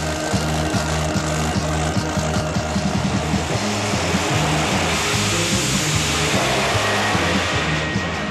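Rock music with a 1955 pro mod drag car's engine noise mixed in, a loud rush that builds through the second half as the car launches and cuts off suddenly at the end.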